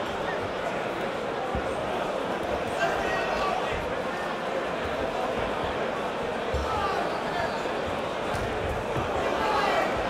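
Crowd in a hall talking and calling out during a boxing bout, with occasional dull thuds from the boxers' punches and footwork on the ring canvas.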